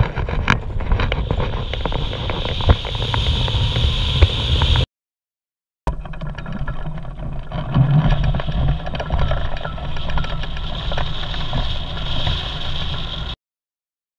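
Wind rushing over the microphone of an action camera mounted on a hang glider during its launch run and takeoff, with a few sharp knocks near the start. The sound drops out for about a second about five seconds in and cuts off shortly before the end.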